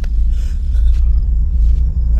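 Deep, steady low rumble from a film soundtrack, with a few faint clicks over it.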